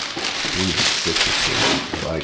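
A plastic packaging bag crinkling and rustling as it is handled and pulled out of a cardboard shipping box.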